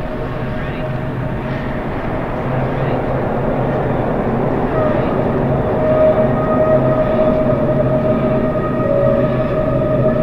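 Electronic music in a droning, rumbling passage: a dense steady wash with held tones, swelling slightly in loudness, and a held higher tone entering about five seconds in.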